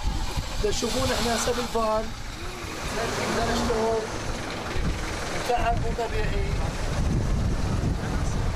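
Several men talking indistinctly in short bursts over a steady low rumble.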